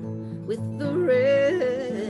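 A woman singing a Finnish song with vibrato to her own acoustic guitar, holding one long note in the middle.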